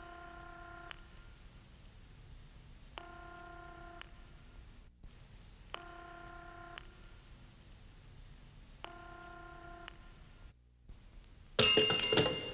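Telephone ringing tone, four rings about a second long, about three seconds apart. Just before the end a cymbal crash and drums come in.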